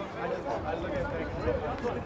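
Several voices talking at a distance, softer than commentary, over open-air ambience.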